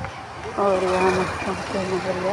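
A person talking in words the recogniser did not catch, over steady street traffic noise.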